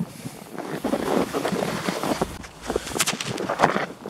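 Footsteps crunching on fresh snow at a walking pace, with a few sharper crunches in the second half.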